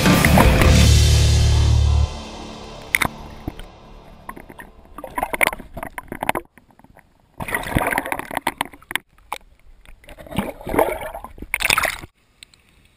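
Rock music that cuts off suddenly about two seconds in, followed by lake water sloshing and gurgling around a submerged camera in irregular bursts as it moves near the surface.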